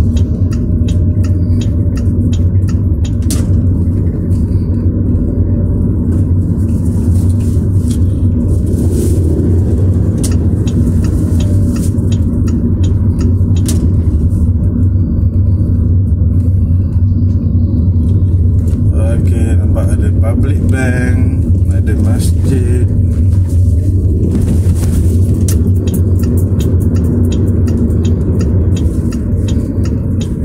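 Steady low road and engine hum of a car driving, heard from inside the cabin, with light clicks and rattles over it.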